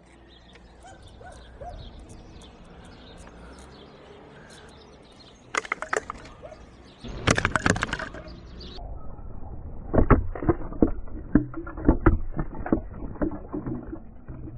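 Outdoor street ambience with birds chirping, then loud bursts of noise and a run of irregular knocks and thumps through the second half.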